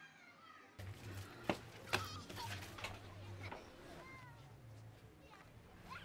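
Faint town ambience that starts about a second in: a low steady hum, two sharp knocks, distant voices and a few short rising-and-falling calls.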